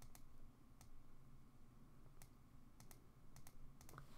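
Near-silent room tone with about eight faint, scattered clicks of a computer mouse as a word is hand-written on screen with it.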